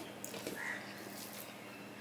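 Close-up wet chewing and mouth smacking of a man eating rice and mutton curry by hand, with the soft squish of his fingers mixing rice on a steel plate.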